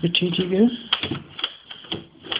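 Metal clicks and rattles from a mortise door lock as its lever handle is worked. Part of the lock's follower is broken, so the latch does not draw back.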